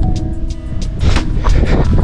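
Wind buffeting an action-camera microphone, a loud low rumble, with background music holding a few sustained notes over it.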